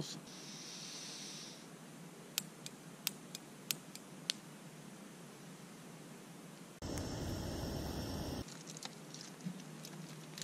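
Small gas camp stove being lit: a short hiss of gas, then about five sharp igniter clicks roughly half a second apart. Near the end comes a louder, steady rush of the burner with a faint whine, lasting about a second and a half and stopping abruptly.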